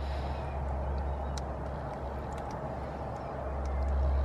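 Electric coolant pump of a BMW N52 straight-six running during the coolant bleed procedure, a steady low hum with faint scattered clicks as air is forced out of the cooling system.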